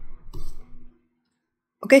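A few faint clicks in the first second, then a brief silence, then a spoken word starts just at the end.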